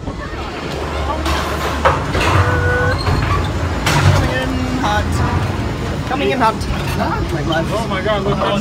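Skyway gondola station machinery running with a steady low hum as a cabin comes through, with people's voices in the background, more of them in the second half.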